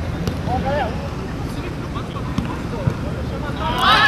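Shouts from players and onlookers at an outdoor society football match over a steady low rumble of background noise, the voices brief and distant at first, then growing louder and more excited near the end as play heads toward goal.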